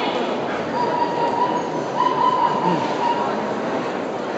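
Dog-show hall din: many dogs barking and yipping over steady crowd chatter, with a level high whine held for about two and a half seconds in the middle.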